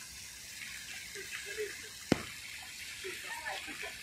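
Fountain jets splashing: a steady hiss of falling water, with a single sharp click about two seconds in.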